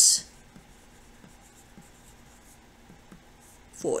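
Pencil writing on paper: a run of faint, short scratching strokes as a word is written out.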